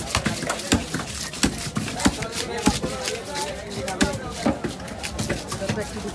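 Heavy fish-cutting knife chopping through a large catla fish on a wooden log block: a run of sharp blows, roughly one every half second or so, with voices talking in the background.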